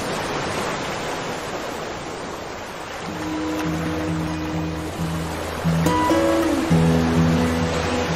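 Background music: a wash of noise like surf, joined about three seconds in by low held notes in a slow rhythm that get louder near the end.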